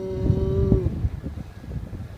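A single drawn-out moo, steady in pitch, that stops a little under a second in, over a low rumble.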